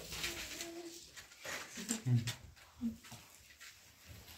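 A voice holding a steady humming note for about the first second, followed by a few short vocal sounds.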